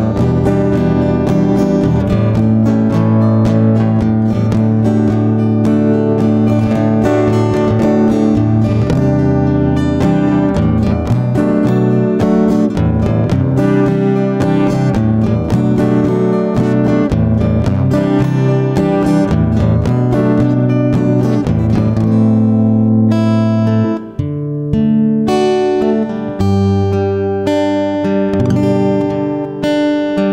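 Acoustic guitar playing a karaoke accompaniment with no vocal: steady strummed chords, then near the end a short break and sparser, more separate plucked notes.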